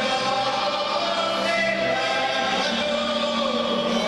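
Live Hungarian folk string band playing: fiddles carry a slow melody in long, wavering held notes over a double bass and a steady low accompaniment.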